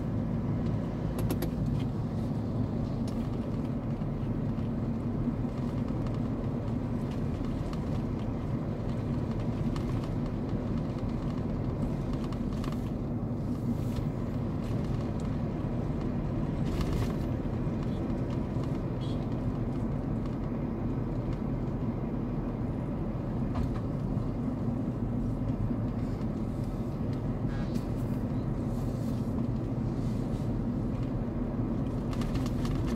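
Steady engine hum and road noise heard from inside a moving car, with a few brief ticks.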